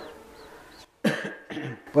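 A person coughing once, a short harsh burst about a second in, between a lecturer's phrases.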